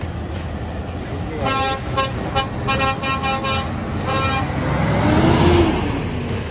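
A truck air horn sounds a quick run of short toots for about three seconds, then a diesel lorry engine rumbles louder as the truck drives close by, loudest about five and a half seconds in.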